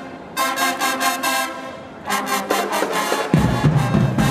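High school marching band playing, with short, punchy brass chords in a rhythmic pattern. Heavy low notes come in about three seconds in.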